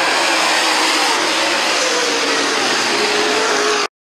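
Dirt late model race cars' V8 engines running hard on the track, a loud steady din, cutting off suddenly just before the end.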